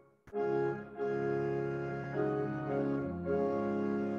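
Pipe organ playing sustained chords. At the very start the sound breaks off for a moment, with a single click, before the chords come back in and move on to new chords a few times.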